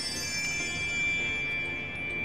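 A bell-like chime sound effect over soft background music: a bright tone comes in just after the start and rings on steadily.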